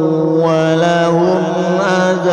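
A single voice chanting Qur'an recitation in melodic tajwid style, holding one long drawn-out vowel with ornamental turns in pitch.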